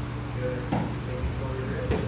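Quiet, indistinct talking over a steady low hum, with two short knocks about a second apart.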